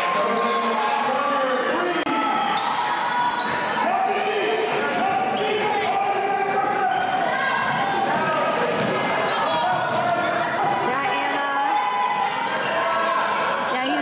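Basketball game sound in a gym: a basketball bouncing on the hardwood floor amid voices of players and spectators, echoing in the large hall.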